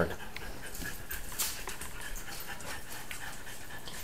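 A French bulldog panting steadily, with a few light clicks about a third of the way through.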